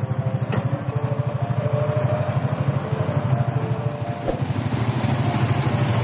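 A small motorcycle engine idling steadily with a rapid, even putter.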